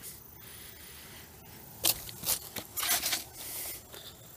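A few faint scuffs and scrapes of footsteps on dirt and gravel, two about halfway through and a short cluster near three seconds, over a low hiss.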